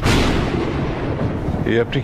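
A dramatic sound-effect hit: a sudden loud boom like a thunderclap that dies away over about a second and a half. A voice starts speaking near the end.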